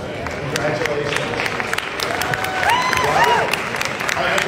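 Scattered applause from a seated audience, with irregular claps over crowd chatter and a voice calling out a little past the middle.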